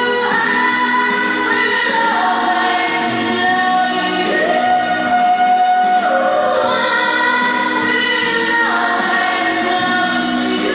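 A woman singing live into a handheld microphone, holding long notes that step to a new pitch every second or two.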